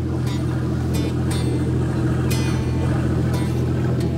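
Steady low drone of a boat motor under background music of plucked guitar-like notes, about one a second.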